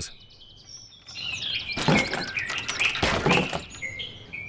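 Birds chirping and whistling, with two loud knocks about two and three seconds in as a small plastic ride-on toy car loaded with a golf bag tips over onto its side.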